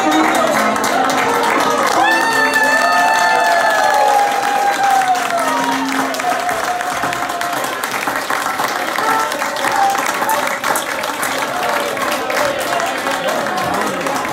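Audience applause and crowd chatter in a large tent, with a held high note from a voice or instrument about two seconds in that lasts about four seconds and bends down at its end.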